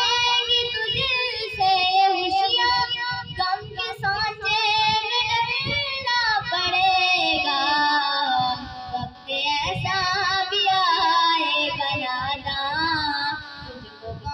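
A child's voice singing an Urdu devotional song in long, wavering, ornamented notes with brief breaks between phrases.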